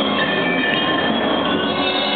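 Percussion ensemble playing a dense, steady texture of many overlapping high ringing tones.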